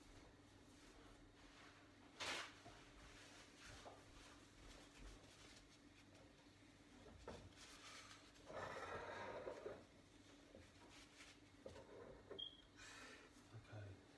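Near silence: quiet room tone with a faint steady hum, one sharp click a couple of seconds in and a short soft noise past the middle.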